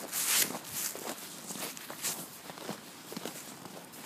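Footsteps of a person walking on snow, a series of short irregular crunches, with a loud rustle right at the start.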